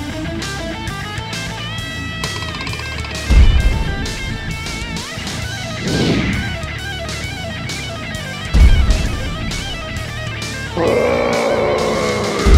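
Rock-style background music with electric guitar, punctuated by two deep booming hits about five seconds apart and a sweeping whoosh between them; a denser, rougher layer comes in near the end.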